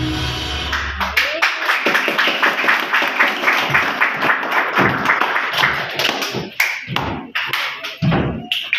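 Recorded dance music stops about a second in, and an audience breaks into applause, dense clapping that thins out to scattered claps near the end.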